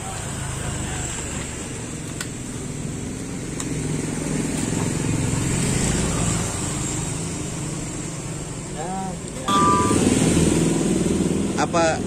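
Road traffic: a low engine rumble that swells and fades through the middle, then a sudden louder traffic rumble from about nine and a half seconds in. A man starts speaking near the end.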